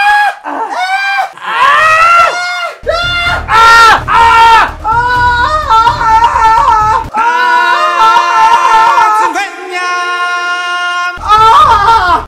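Men screaming and yelling in pain, a series of long drawn-out cries, some held on one pitch, as duct tape stuck to the bed pulls at their body hair.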